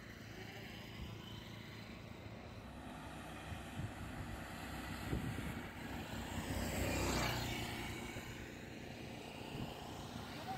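A car passing by on a highway. Engine and tyre noise swell to a peak about seven seconds in, then fade.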